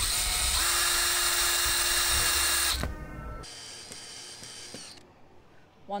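DeWalt cordless drill driving a screw into a car tyre's tread: the motor runs with a steady high whine for about three seconds, then drops off to a quieter sound.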